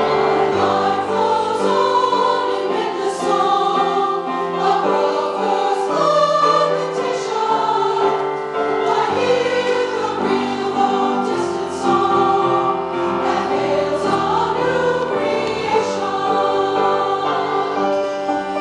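Women's choir singing a Quaker hymn, accompanied by grand piano.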